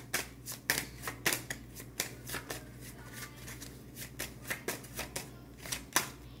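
A deck of tarot cards being shuffled by hand: a run of short, irregular card snaps and slides, roughly two a second.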